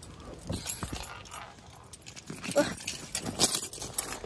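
Rear side door of a 2002 Jeep Liberty being opened by hand: the handle pulled, the latch clicking, and a few knocks as the door swings open.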